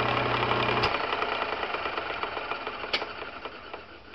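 Electric power drill running, then winding down: its steady motor hum cuts out about a second in and the whir fades away as it spins down, with a couple of sharp clicks along the way.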